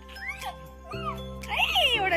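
Background music with sustained tones and a gliding melody.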